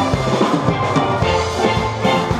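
Steel band playing: many steel pans strike out a melody and chords over held low notes from the bass pans, at a steady rhythmic beat.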